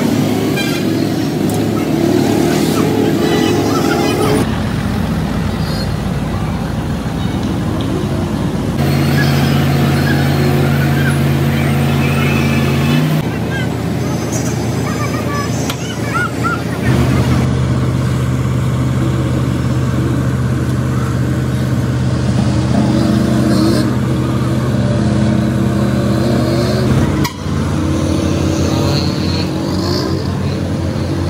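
Construction-site street sound in a run of short clips: heavy machinery engines running with a steady low hum, traffic and voices around them. The sound changes abruptly every few seconds as one clip gives way to the next.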